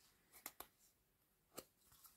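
Near silence broken by a few faint clicks, two about half a second in and one near a second and a half in: waxed thread being lifted out of and pressed into the slots of a foam kumihimo disk.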